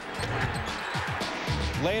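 Game sound from a college basketball arena: crowd noise and a basketball bouncing on the hardwood court, under a background music bed. A man's voice starts near the end.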